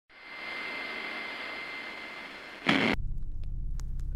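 Produced intro sound effects: a static-like hiss with a thin steady high tone fades in, is cut off by a sudden loud burst about two and a half seconds in, and gives way to a low rumble that carries on.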